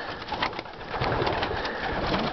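Young racing homer pigeons pecking grain from a hand: a dense run of quick light clicks over a rustling of feathers and shuffling birds.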